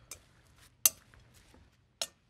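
A metal spoon tossing a dressed cabbage salad in a glass mixing bowl: faint stirring with a few small ticks and one sharp clink of the spoon against the bowl a little under a second in.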